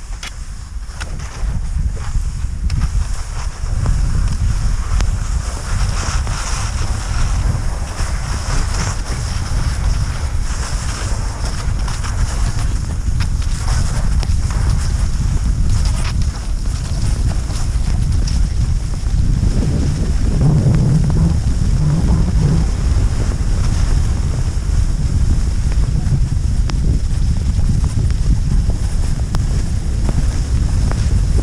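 Wind buffeting the microphone of a camera carried on a fast cross-country ski run, with the hiss of skis gliding in a groomed snow track. It grows louder over the first few seconds and then runs steadily.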